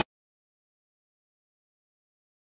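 Music cuts off abruptly at the very start, then complete silence.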